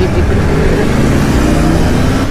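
Yamaha sport bike engine pulling away under acceleration, its note rising steadily in pitch, with wind rushing over the helmet-mounted microphone.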